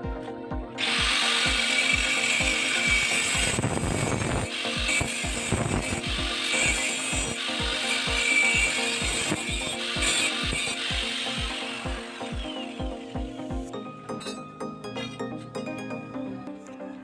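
Angle grinder with a cut-off disc cutting through a 1.5-inch metal pipe: it starts about a second in, runs loudly for roughly twelve seconds, then winds down and stops near the end. Background music with a steady beat plays throughout.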